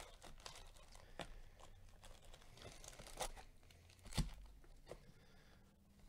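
Cardboard trading-card hobby box being opened and handled by gloved hands: faint rustling and tearing, with a few sharper crackles, the two loudest about three and four seconds in.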